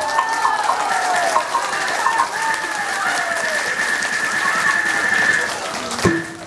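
Taiwanese opera accompaniment during a stage fight: a high, shrill melody instrument playing sliding, swooping notes, with one high note held for about three seconds in the middle.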